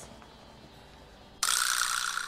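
A sudden crash of noise about one and a half seconds in, fading over about a second: an editing sound effect as the video cuts to a title card.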